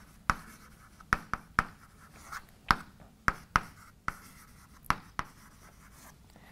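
Chalk writing on a chalkboard: about ten sharp, irregularly spaced taps of the chalk striking the board, with faint scratching between them as the words are written.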